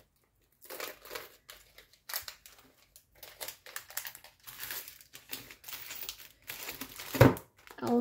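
Packaging crinkling and rustling as it is handled in irregular bursts, with one louder crackle near the end.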